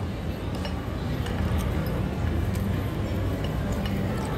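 Restaurant dining-room background: a steady low murmur of room noise with a few faint clinks of forks on plates.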